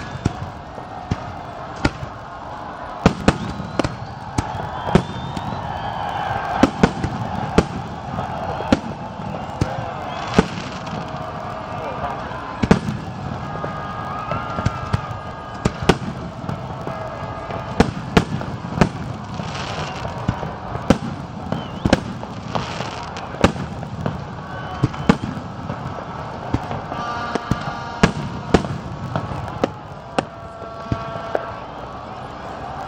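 Aerial firework shells bursting in a long run of sharp bangs, irregularly spaced at about one or two a second, over the steady sound of people's voices.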